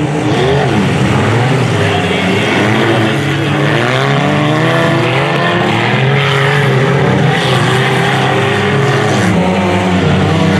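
Several front-wheel-drive stock car engines racing together, their overlapping notes rising and falling as the drivers accelerate and lift off.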